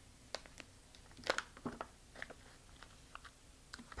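Resealable foil pouch being pulled open at its zip top, giving a scatter of faint crinkles and clicks.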